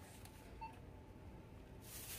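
A short, faint electronic beep from a self-checkout station about half a second in, over quiet store background with a steady faint hum. A brief rustle of handling near the end.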